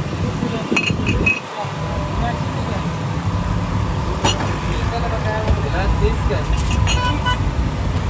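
Steady low rumble of street traffic, with glass tumblers clinking a few times: once about a second in, again around four seconds, and a quick cluster near the seven-second mark.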